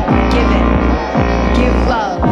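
Electronic synthesizer music from a Korg M3 keyboard: a deep, steady bass drone under dense sustained tones, crossed several times by pitch sweeps that slide downward.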